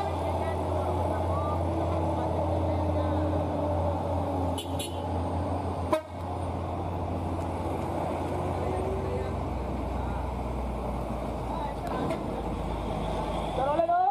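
Congested mountain-road traffic: a heavy truck engine runs with a steady low hum while car horns toot and voices call out. The sound breaks off sharply about six seconds in and carries on.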